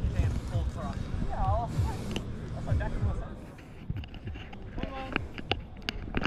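Indistinct voices of people talking in the background, with a low rumble on the microphone. A few sharp knocks come near the end.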